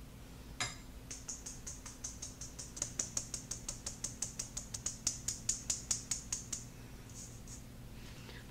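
Flour being sifted through a fine-mesh sieve, tapped with a metal measuring scoop: a quick, even run of light metallic taps, about four to five a second, each with a soft hiss of flour through the mesh. The tapping starts about a second in and stops after about six and a half seconds.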